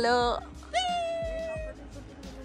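A cat meowing as music ends in the first half-second. The clearest meow is a single call of about a second that jumps up and then slides slowly down in pitch.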